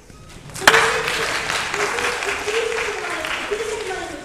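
Audience applauding. It starts suddenly a little over half a second in, opened by one sharp click, and carries on steadily.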